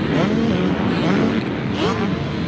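250cc motocross bike engines revving on the track, the pitch rising and falling in sweeps as riders work the throttle over the jumps.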